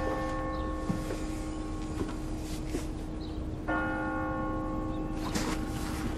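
A bell tolling: one stroke rings on from the start, and a second stroke comes about four seconds in, each ringing with several steady tones. Two short rustles come near the end.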